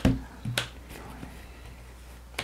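Playing cards handled at a tabletop while points are counted: a sharp click with a low thump at the start and a lighter click about half a second in.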